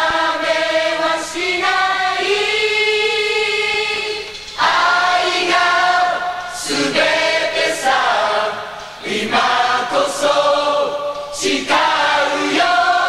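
A chorus of many voices singing together in long held notes, in phrases a couple of seconds long with brief breaks between them, with no clear beat underneath.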